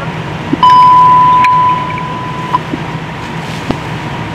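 A single steady radio tone, about two seconds long, sounding on a fire dispatch channel between transmissions over radio hiss and a low hum. A couple of faint clicks follow.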